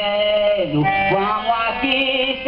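Live folk song of a bumbá-meu-boi (reisado) group: a man's voice drawing out a sung line over instrumental accompaniment.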